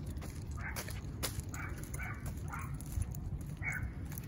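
Bull terrier whining in about five short, high cries spread through a few seconds, with a few sharp clicks over a steady low rumble.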